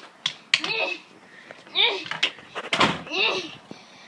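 A child's high voice in short utterances, broken by a few sharp knocks, the loudest a little under three seconds in.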